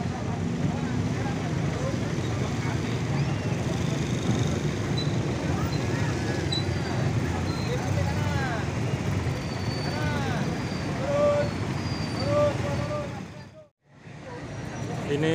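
Coach bus diesel engine running at low revs as the bus moves slowly forward, a steady low rumble under scattered voices of people around it. The sound drops out briefly near the end.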